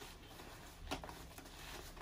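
Faint rustling and handling of a nylon stuff bag and its elastic straps being taken off, with one soft tap about a second in.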